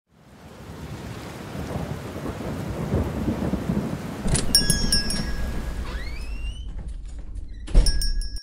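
Rain and rolling thunder of a storm fading in. About halfway a small shop-door bell jingles, a creaking squeak rises, and near the end a loud thump comes with the bell ringing again, as a door opens and shuts.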